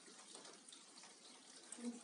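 Near silence: faint steady hiss of room tone, with a brief faint voice sound just before the end.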